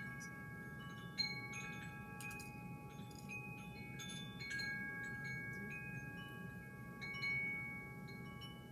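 Chimes ringing: several clear tones set off at irregular moments, each held for a second or more and overlapping the next.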